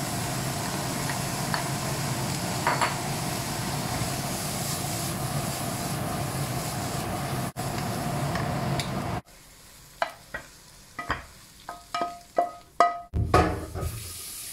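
Green chili peppers and scrambled egg stir-frying in a wok: steady sizzling with a wooden spatula stirring. About nine seconds in, the sizzling stops abruptly and a series of light clinks on dishware follows, each ringing briefly, with a duller thud near the end.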